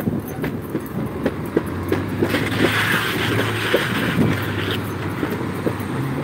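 Road traffic on a busy street, with one vehicle going by in the middle, its engine hum and tyre noise swelling for about three seconds and then fading. Short, light ticks of footsteps and dog gear run throughout.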